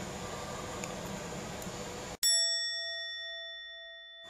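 Faint room noise, then about halfway through a single bell ding, an added sound effect, struck once and left ringing with slowly fading tones.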